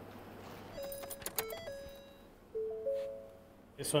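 Electronic controller switching on: a few clicks about a second in, then a short sequence of steady electronic beep tones at two or three different pitches, some overlapping, like a start-up chime.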